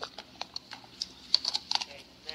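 Light, irregular clicks and taps picked up close to the podium microphone, a few at first and then a quick cluster in the second half.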